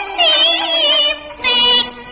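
Old Cantonese opera-style song recording: a high, wavering melodic line in two short phrases over a steady lower accompaniment.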